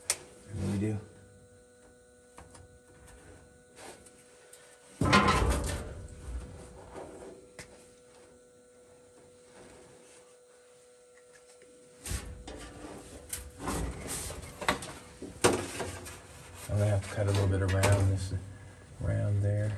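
A cardboard pattern piece being handled, slid and trimmed against sheet-metal bodywork. There is a single scrape about five seconds in, then a run of scrapes and rustles from about twelve to sixteen seconds, with a faint steady hum underneath.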